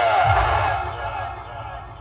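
A Hindi voice line played through a large outdoor DJ speaker system during a vocal soundcheck, with a low bass hit under it; the phrase ends in the first second and fades away.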